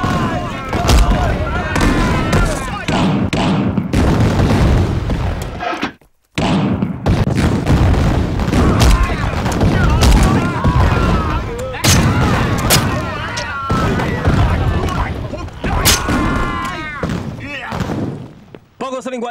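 Battle sound effects: gunfire and explosions over a constant low rumble, with men shouting amid the fighting. It cuts out suddenly for a moment about six seconds in, then resumes.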